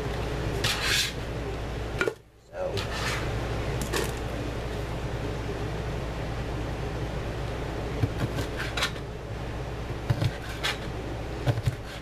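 Cleaver chopping through smoked sausage onto a plastic cutting board: irregular single knocks a second or two apart, over a steady background hum.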